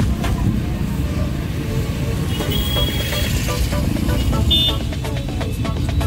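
Car driving through busy street traffic: steady low engine and road rumble, with short high horn toots about two and a half seconds in and again near five seconds.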